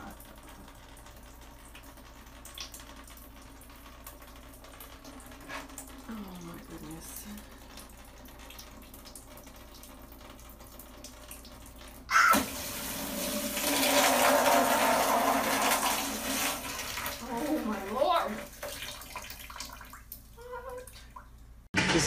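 Water from a leak above the ceiling suddenly gushing out through a ceiling light fixture and pouring down, starting about halfway through after a quieter stretch. It runs loud and steady for a few seconds, then eases off near the end.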